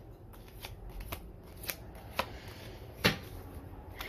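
Tarot cards handled and laid out one by one on a table: about half a dozen short, sharp card snaps and taps, the loudest about three seconds in.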